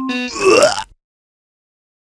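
The last note of a short electric-piano intro jingle, followed by a loud sound effect that slides up and down in pitch for about half a second and cuts off about a second in.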